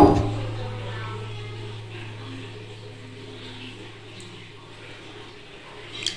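Inside a Schindler elevator car that has just jammed to a sudden stop: the noise of the stop dies away over the first two seconds, leaving a faint steady low hum in the stalled cab.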